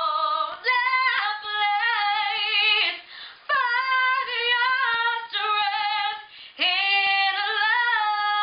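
A woman singing unaccompanied, holding long high notes with vibrato and breaking for breath about three times.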